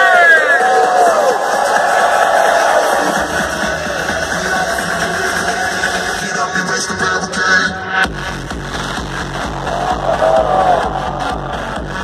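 Loud live electronic dance music from a festival sound system with the crowd cheering. About eight seconds in the music changes abruptly and a heavy, steady bass beat comes in.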